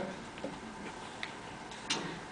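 Quiet room tone with a few faint clicks from small objects being handled on a table. The loudest click comes near the end.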